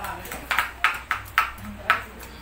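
Knife chopping on a cutting board: a row of sharp strikes, about two a second.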